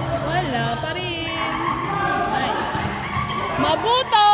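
Basketball bouncing on a hard court, with players' voices calling out.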